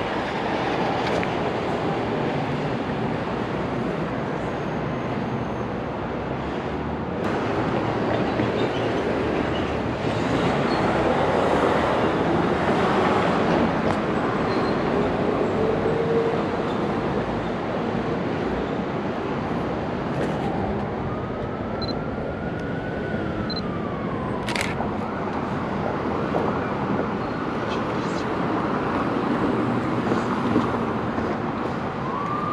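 Steady city street noise of passing traffic and wind on an action camera's microphone. About three quarters of the way through comes a single sharp click of a film SLR's shutter, and shortly before it a faint tone rises and then falls.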